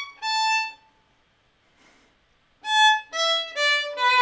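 Solo violin playing an etude's shifting passage slowly: one high note, a pause of about two seconds, then three or four separate notes stepping down in pitch.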